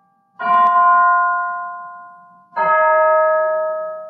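Piano playing slow chords: two chords struck about two seconds apart, each left to ring and die away.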